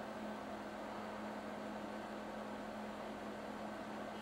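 A steady low hum over an even hiss, unchanging throughout.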